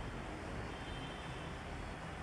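Steady background noise with a low rumble and no speech.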